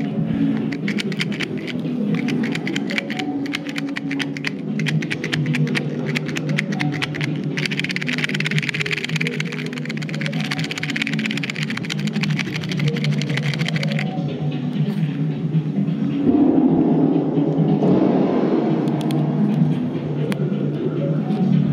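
Music playing, with a fast, even ticking beat over a fuller low part. A hiss-like layer joins about a third of the way in and drops out past the middle, and the music swells near the end.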